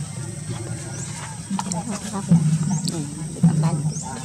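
People talking in the background in low voices, on and off, with a few short, high rising chirps.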